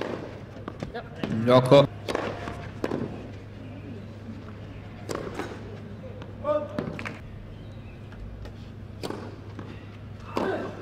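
Sharp racket-on-ball hits of a tennis rally spaced a few seconds apart. A short loud shout comes about a second and a half in, and a briefer voice call near the middle.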